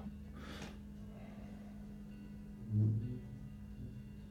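Quiet room tone with a steady low electrical hum, a soft breath near the start, and a short low murmur from the man's voice about three seconds in.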